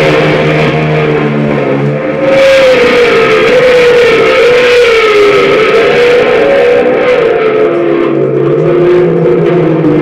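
Live rock band, loud and distorted: an electric lead guitar holds long notes that bend and waver up and down, over bass and drums. The low held note underneath drops out about two seconds in and returns near the end.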